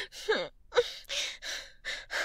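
A woman's short falling whimper near the start, then a run of quick, breathy gasps, about four in under two seconds: shaky, upset breathing.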